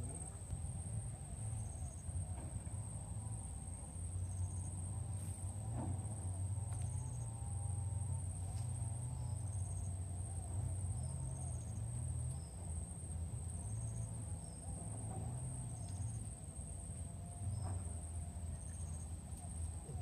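Insects in the riverside vegetation give a steady, high-pitched drone, with a short high chirp repeating about every second and a half, over a low rumble of wind on the microphone.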